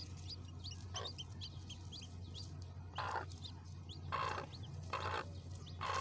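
Newly hatched chicks peeping: short, high, rising cheeps, several a second at first and sparser later. A few short, louder rustles come as a hand lifts and moves them about in the straw nest.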